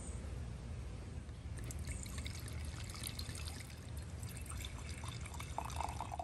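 Red wine poured from a glass bottle into two stemmed wine glasses in turn, starting about a second and a half in.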